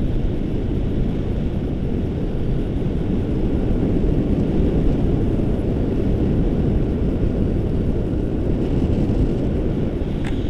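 Wind rushing over the camera microphone in flight under a tandem paraglider: a steady, low, even noise.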